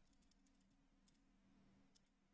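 Near silence with a few faint computer-keyboard key presses, the Enter key tapped to step through training-setting prompts, over a faint steady low hum.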